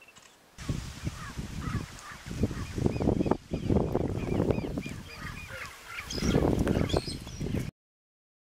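Birds calling: many short, arching calls, repeated over a loud, uneven low rumble. The sound starts about half a second in and cuts off abruptly near the end.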